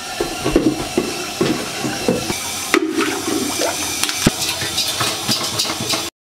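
A toilet flushing: a steady rush of water with uneven gurgles, and a single sharp click about four seconds in.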